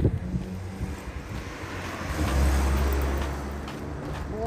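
A car passing on the street: its tyre and engine noise swells over about two seconds, with a low engine hum at its loudest, then fades away near the end.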